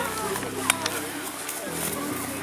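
Faint voices over a steady low hum, with two short clicks less than a second in.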